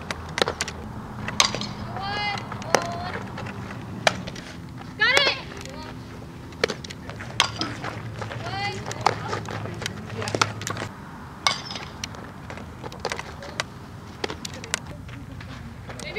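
Sharp pops of a softball smacking into leather fielding gloves, one every second or two, during infield throwing and fielding drills, with players' short shouted calls between them.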